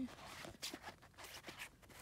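Two paperback books being picked up and handled, a run of soft, irregular rustles and scrapes of their paper covers.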